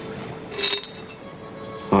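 A brief metallic clink about half a second in, as a small metal key is handled and shaken out, over soft background music holding steady notes.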